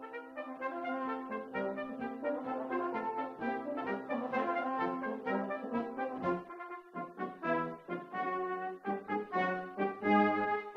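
Brass band of cornets, tenor horns, euphoniums and trombones playing held chords over a sustained bass note. A brief break comes about seven seconds in, followed by shorter, detached chords.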